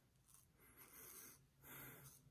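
Faint scraping of a J.A. Hellberg straight razor cutting through two days of stubble on the neck, in two short strokes: one about a second in and one near the end.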